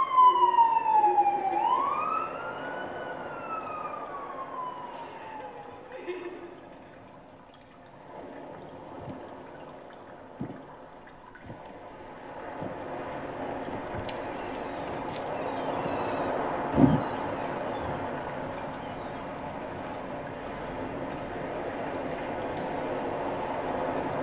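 Emergency vehicle siren wailing: its pitch falls, rises once and falls away again over the first six seconds. After that comes a soft, steady background hiss with a few faint knocks.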